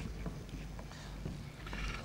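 Faint sizzling and bubbling from a frying pan of cured meat and chopped tomatoes and a pot of boiling pasta, both being stirred with wooden spoons. A few light scraping ticks come from the spoons.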